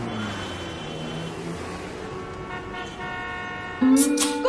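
City street traffic: a steady wash of road noise with low engine drone, and a car horn sounding in the second half. A louder pitched sound cuts in just before the end.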